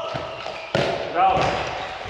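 A handball striking once with a sharp thud about a third of the way in, echoing in the sports hall. About half a second later comes a short pitched sound that bends in pitch.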